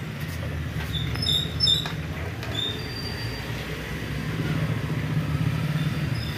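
A steady low mechanical rumble, like a nearby engine running, with a few short high chirps between one and two and a half seconds in.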